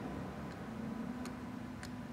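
Faint light ticks, about one every two-thirds of a second, as the rocker arm of a GY6 139QMB scooter engine's cylinder head is pressed by hand, pushing the valve down against a soft checking spring under a dial indicator.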